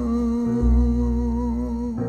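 A male voice holds one long hummed note with a slight waver. Deep plucked double-bass notes sound beneath it, one coming in about halfway through.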